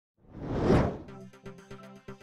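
News-show intro sting: a whoosh swells and dies away within the first second, then music starts with held tones and a quick run of short percussive hits.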